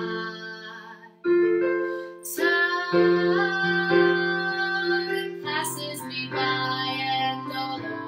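A woman singing a slow ballad, accompanied by sustained chords on an electric keyboard piano; the chords change every second or two, with a brief dip just before a new chord about a second in.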